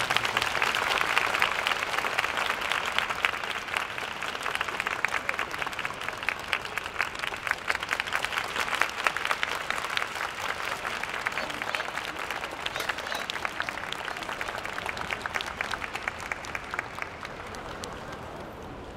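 Audience applauding with dense clapping, which thins out and grows quieter toward the end.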